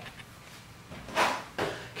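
Salt poured from a canister into a bucket of ice water: a brief rushing pour a little over a second in, then a second short burst.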